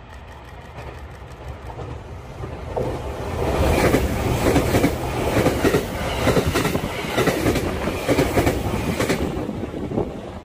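Passenger train passing close by, wheels clacking over the rail joints in a quick, uneven rhythm. It grows from a distant rumble to loudest at about four seconds in, then fades near the end.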